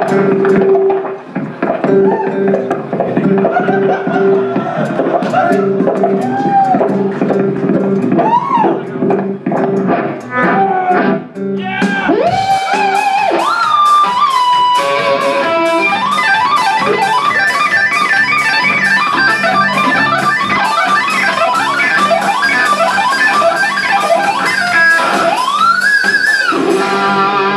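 Electric guitar played live and loud, with held notes and repeated sliding pitch swoops, turning into denser, busier playing from about halfway through.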